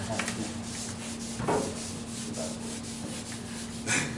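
Felt-tip marker scratching and rubbing on a flip-chart paper pad, with paper handling as a page is turned over, and a louder swell about a second and a half in.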